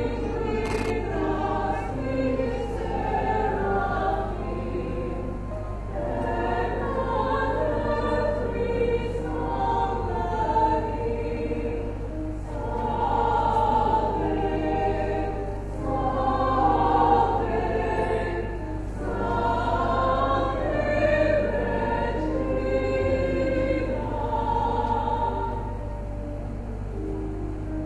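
Mixed choir singing a hymn in long, swelling phrases, over a steady low hum.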